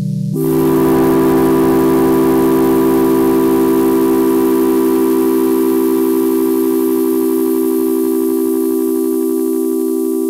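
Yamaha CS-50 analog polyphonic synthesizer changing from a low chord to a higher, brighter chord about a third of a second in, then holding it. The upper tones waver slightly and slowly soften over the held chord.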